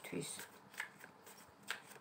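A deck of tarot cards being shuffled by hand: a few soft flicks and slides of card against card, the loudest near the end.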